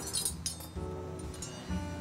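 Tableware being arranged on a table: a few sharp clinks of china, cutlery and glass in the first half second. Background music with steady held tones plays throughout.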